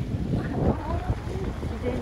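Wind buffeting a smartphone microphone as a low rumble, over the steady rush of a shallow mountain river flowing across gravel.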